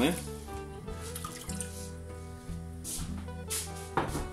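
Liquid marinade pouring from a bowl into an enamel casserole pot, the last of it splashing in at the very start, over steady background music. A short clatter near the end.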